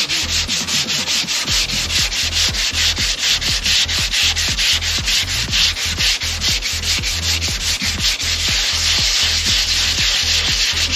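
120-grit sandpaper on a hand sanding block rubbing back and forth over a filled, guide-coated van quarter panel, in quick even strokes about four a second. This is guide-coat sanding, done to show up low spots in the filler.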